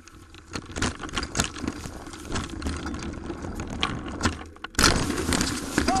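Mountain bike rattling down a rough dirt trail: a dense, irregular clatter of chain, frame and knocks from bumps, with one loud jolt a little before the end.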